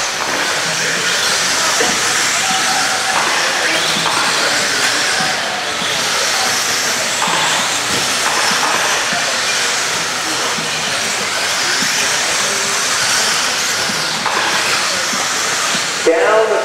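Several electric RC buggies with 17.5-turn brushless motors racing on a dirt track: a steady hiss of motor whine and tyres on the surface. Faint whine tones shift up and down as the buggies speed up and slow.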